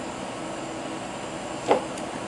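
Steady hum of room equipment, such as ventilation or computer fans, with one brief sharp sound near the end.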